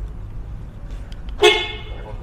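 A car horn gives one short toot about a second and a half in, over a steady low hum.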